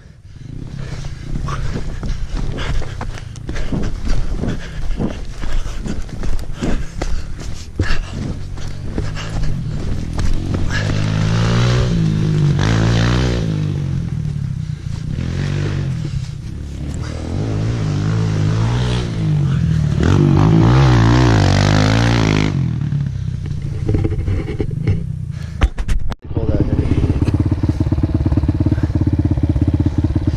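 Kawasaki KLX 140L dirt bike's single-cylinder four-stroke engine, fitted with a new exhaust pipe, revving up and down as it is ridden, with two longer rises and falls in revs around the middle of the stretch. After a short break about three-quarters through, it runs steadily close by.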